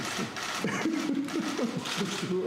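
Indistinct voices of several people talking at once, overlapping chatter with no single clear speaker.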